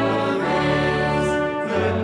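Choir singing a closing hymn with accompaniment, in long held notes that change pitch twice.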